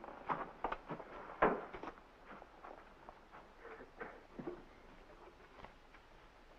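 Footsteps and light knocks of people walking out across a floor: a quick run of steps in the first two seconds, the loudest about one and a half seconds in, then fainter scattered steps dying away.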